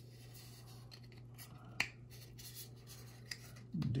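Plastic model-kit parts handled and rubbed together as a small plastic fin is pushed into its holes in the rocket's thrust structure, with one sharp click about two seconds in and a fainter click shortly before the end, over a steady low hum.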